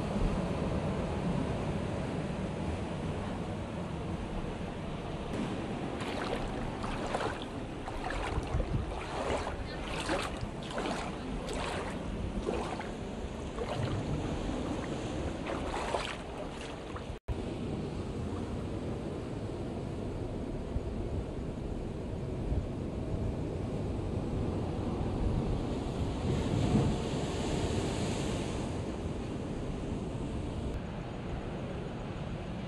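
Steady wash of ocean surf on a rocky shore, with wind on the microphone. A run of short, crisp splashes or gusts comes through for about ten seconds in the first half, and the sound cuts out for an instant just past the middle.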